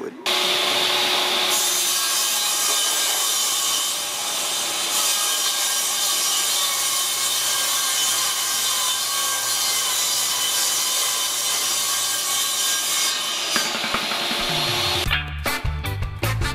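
Vertical panel saw ripping a sheet of plywood into strips, the motor and blade making a steady, loud cutting noise together with the attached dust collector. The sawing stops about thirteen and a half seconds in, and upbeat music takes over.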